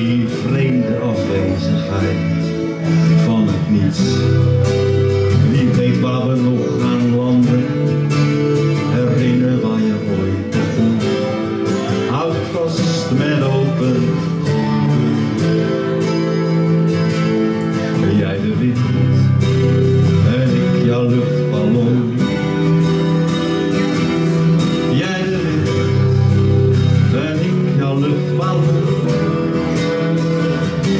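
Acoustic guitar and electric guitar playing together live in a song, a continuous passage of picked and strummed chords.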